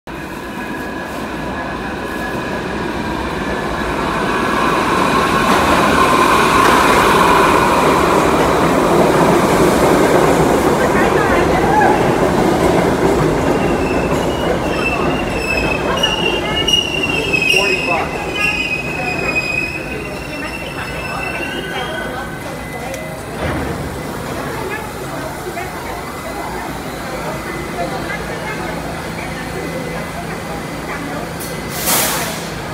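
R68A subway train pulling into the station and braking to a stop: the rumble of wheels on the rails builds for the first several seconds, then high wheel squeal comes from about halfway through as the train slows, and the sound settles to a lower steady level once it has stopped.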